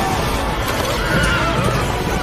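A horse whinnying about a second in, over galloping hoofbeats and the low rumble of a sandstorm wind.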